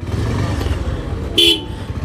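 Motorcycle riding slowly through a busy street: steady engine and road noise, with one short vehicle horn toot about one and a half seconds in.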